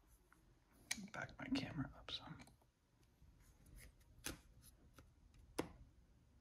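Trading cards handled quietly and laid flat on a granite countertop: a few light, sharp taps, about a second in and twice near the end, with soft card sliding between.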